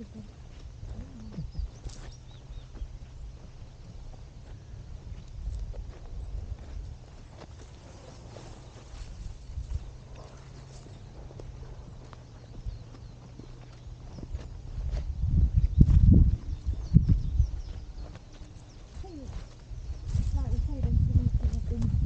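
Footsteps crunching along a dirt hillside path, with wind buffeting the microphone in low gusts, loudest about fifteen seconds in and again near the end. A brief laugh comes about two seconds in.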